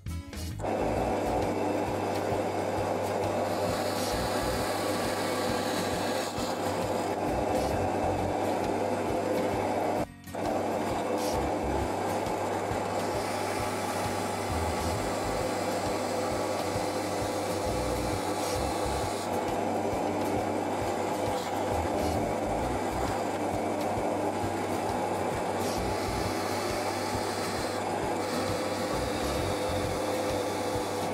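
Benchtop drill press motor running steadily as a twist drill bit bores into a block of pine. The sound breaks off for a moment about ten seconds in, then carries on.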